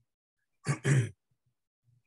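A woman clearing her throat: two short rough rasps close together about a second in, with near silence around them.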